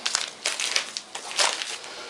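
Paper sachets of granulated sugar crinkling and rustling as they are picked up and handled, in several short crackly rustles.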